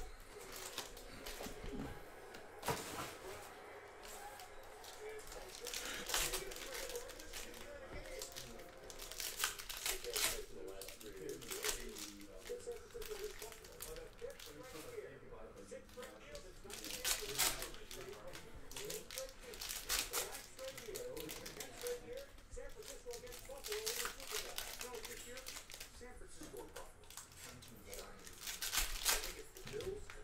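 Foil trading-card pack wrappers being torn open and crinkled, with sharp crackles every few seconds amid the handling of card stacks.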